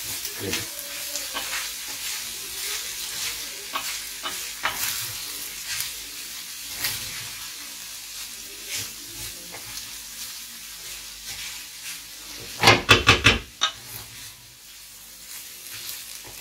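A wooden spoon stirs rice in a sizzling stainless steel frying pan, scraping across the pan bottom while the oil hisses steadily. About two-thirds of the way through comes a brief, loud clatter of quick knocks.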